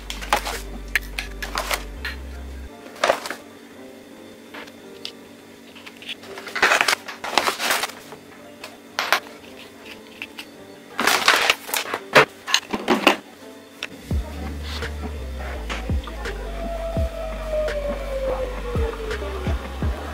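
Close-up coffee-making sounds: a paper coffee bag crinkling, then ground coffee being scooped and tamped into an espresso machine's metal portafilter basket, with sharp clicks, taps and scrapes. Background music with a low bass line plays at the start, drops out, and comes back about two-thirds of the way in.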